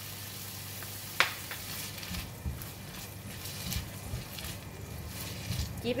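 Chicken, kailan stems and bird's-eye chillies sizzling gently in a non-stick wok, with one sharp click about a second in and soft low knocks later on.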